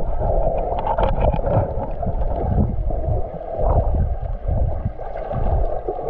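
Muffled sound of sea water heard from a submerged camera: a steady low rumble with gurgling, and a few sharp clicks about a second in.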